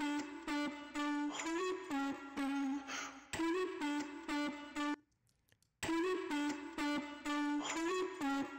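Vocal-chop part played back through Fruity Compressor pushed to extremes (20:1 ratio, fastest attack and release, −40 dB threshold), so heavy compression breaks it up into a fuzzy distortion. The phrase stops for under a second about five seconds in and starts again, with the compressor's knee set to soft and then to hard.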